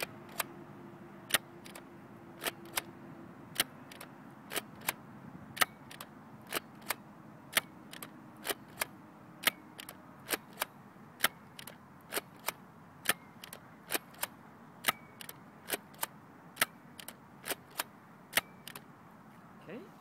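Nerf Dart Tag Furyfire spring-powered foam-dart blaster being pumped and fired through its full ten-dart drum: a steady string of sharp plastic clicks and snaps as the pump is worked and each dart is shot, one shot about every two seconds.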